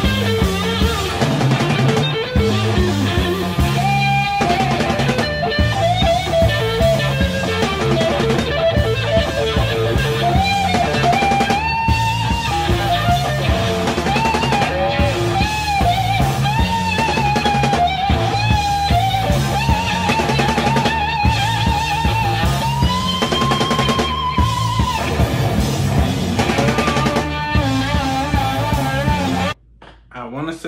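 Live rock recording: an electric guitar solo of long, wavering bent notes over a drum kit. The music stops abruptly just before the end.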